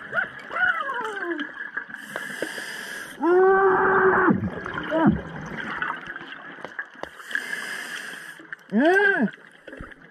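Scuba diver breathing through an open-circuit regulator underwater: a hissing inhalation about two seconds in and again about seven seconds in, each followed by a pitched, moaning exhalation that rises and falls, with bubbling.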